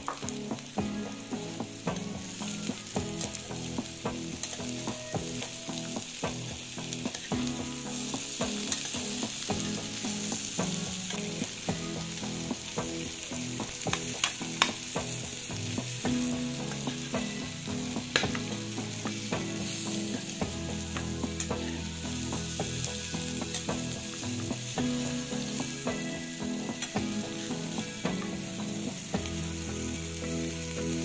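Sliced potatoes and red onion sizzling in oil in an aluminium frying pan, with a metal spoon stirring and scraping them against the pan in scattered sharp clicks.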